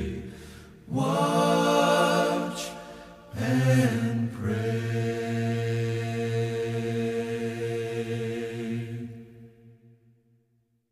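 Unaccompanied voices singing the close of a hymn: a short phrase, then a long held final chord that fades out near the end.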